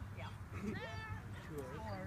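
A sheep bleats once, a wavering call that rises and then holds for about half a second, a little way in. People are talking quietly underneath.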